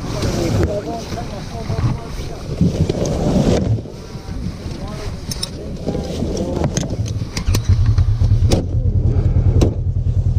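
Side-by-side UTV engines running, the rumble shifting in the first few seconds and settling into a steady low idle about halfway through. Several sharp clicks come in the later half as a racing harness is buckled.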